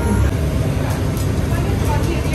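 Busy restaurant ambience: indistinct voices over a steady low rumble.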